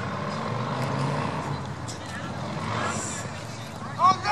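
A steady low rumble of outdoor background noise with faint distant voices calling.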